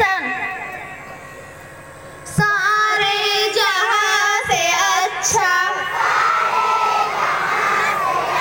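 A group of children singing together in unison. The singing starts loudly about two and a half seconds in, after a quieter stretch.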